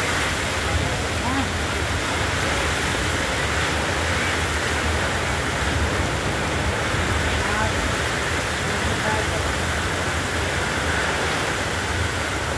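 Heavy rain pouring down steadily, a dense, unbroken hiss of downpour on the street.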